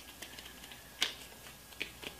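Paper banknotes being folded and creased by hand: faint, scattered paper clicks and ticks, with one sharper click about a second in.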